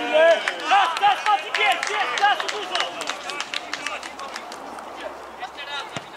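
Footballers shouting short calls to each other on the pitch during an attack, loudest in the first three seconds and fainter after, with many short sharp clicks throughout.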